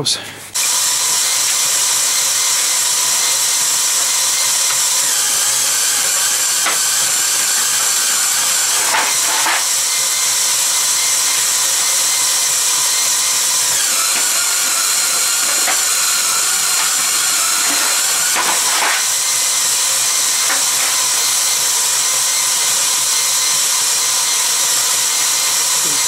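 Cordless drill motor, trigger tied down, running steadily and a little fast as it drives a bead roller through a roller chain and sprocket, rolling beads into thin doubled-up aluminium sheet. It starts suddenly about half a second in, with a couple of brief knocks from the machine along the way.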